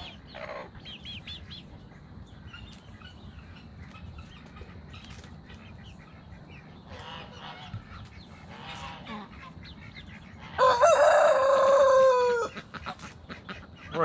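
A rooster crows once, loud and about two seconds long, its pitch falling at the end, starting about three quarters of the way through. Before it, hens cluck quietly.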